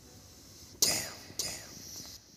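A man's whispered vocal ad-libs from the rap track's vocal line: two breathy bursts about half a second apart, each trailing off in an echo, with no beat underneath.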